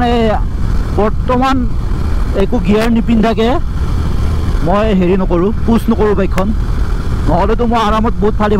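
A man talking while riding, over a steady low rumble of wind and engine noise from the moving motorcycle.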